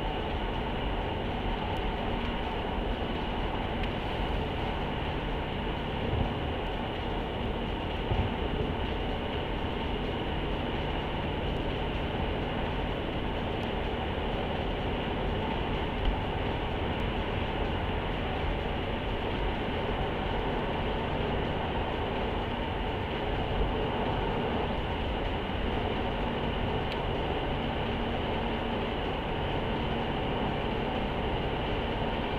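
Steady road and engine noise heard inside a moving car's cabin, with a few light knocks along the way.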